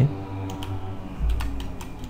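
Light, scattered clicks from computer controls, about half a dozen spread irregularly over two seconds, over a faint steady hum.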